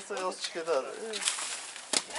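Short, drawn-out vocal sounds from people, some held on one pitch and some falling, with a single sharp click just before the end.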